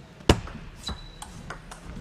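Table tennis rally: the ball clicking off the paddles and the table, one sharp hit a quarter-second in, then lighter clicks about every third of a second. A brief high squeak comes near one second in.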